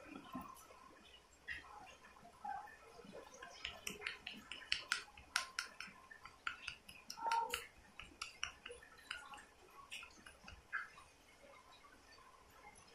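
Faint wet clicks and smacks of a baby mouthing and sucking on a silicone teether and feeding spoon, most of them packed between about three and eight seconds in, with one brief soft baby sound about seven seconds in.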